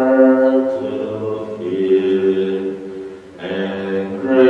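Voices singing a slow hymn in long held notes, typical of a Mass entrance hymn, with a short break between phrases a little after three seconds in.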